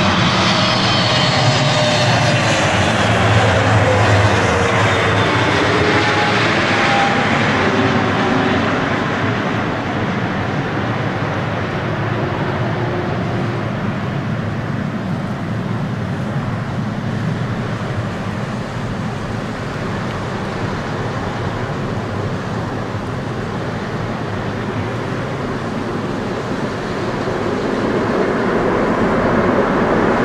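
Boeing 777 jet engines passing low overhead on final approach, their whine sliding down in pitch as the airliner goes by, then a steady roar through touchdown on a wet runway. The roar swells again near the end as reverse thrust is applied.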